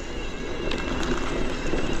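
Mountain bike rolling along a grassy dirt track: a steady rumble of tyres and wind on the microphone, with a faint steady high whine and a few light clicks about two thirds of a second in.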